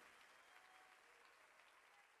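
Near silence: the faint tail of audience applause fading out at the end of a live worship song.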